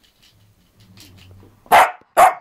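A Cavalier King Charles Spaniel barks once, loudly, near the end, after a faint low rumble.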